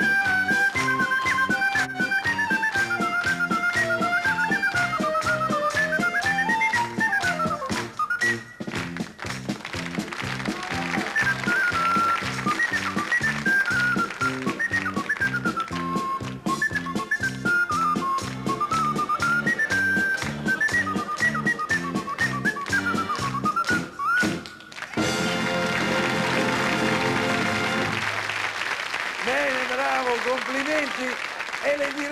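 A high, pure-toned melody played on a small whistle-like wind instrument held cupped in both hands, over a band's bouncy rhythmic backing. The tune stops about 25 seconds in and applause follows, then a man starts speaking near the end.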